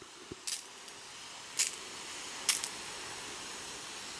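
Pump-pressure sprayer wand misting water onto a tray of succulent cuttings: a soft, steady spray hiss, with three brief sharper spurts.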